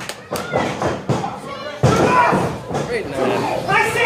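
Thuds of wrestlers' bodies and limbs hitting the wrestling ring mat, with a loud thump a little under two seconds in. Voices shout over it.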